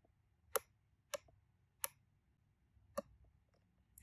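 Small tactile push button on a breadboard clicking as it is pressed and released: four sharp, separate clicks over about three seconds.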